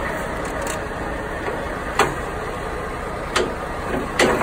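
Steady low rumble with a sharp knock about two seconds in and a lighter one later, as a phone is handled.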